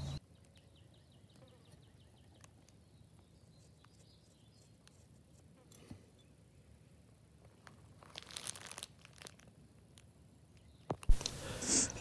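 Mostly near silence: a brief rustling noise about eight seconds in, and a single sharp click about a second before the end.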